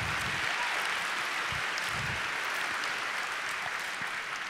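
Audience applauding, a steady clapping that eases slightly near the end.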